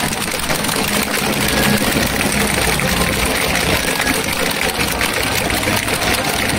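A player's entrance song playing over a stadium's public-address system, heard as a loud, blurred wash with steady low bass notes.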